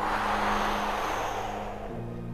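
A long audible breath out through pursed lips, a soft rushing that fades away over about two seconds.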